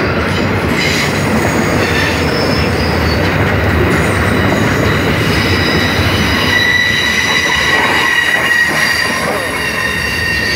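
Freight train cars rolling past close by, their wheels running on the rails in a loud, steady rumble. A thin, high-pitched wheel squeal grows stronger from about six seconds in.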